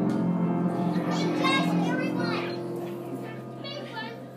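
Many young children singing and calling out together over a held accompaniment chord. Their voices are loudest from about one to two and a half seconds in and rise again near the end.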